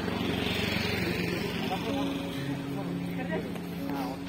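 A motor vehicle going by over the first two seconds or so, over a bed of voices and held musical notes.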